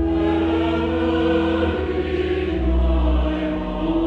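Mixed church choir singing sustained chords over organ accompaniment, with deep held bass notes that change about two and a half seconds in.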